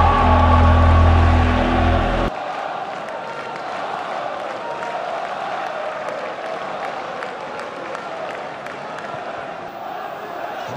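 A short intro music sting of deep bass and held tones cuts off suddenly about two seconds in, giving way to the steady noise of a large football stadium crowd.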